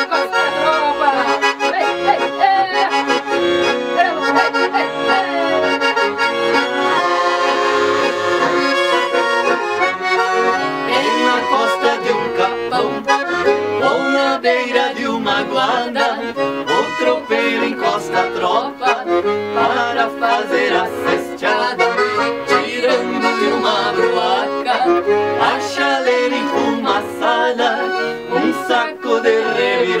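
Two Todeschini piano accordions playing an instrumental passage together in gaúcho serrana (música serrana) style: sustained chords and melody with a lively pulsing rhythm that grows busier about ten seconds in.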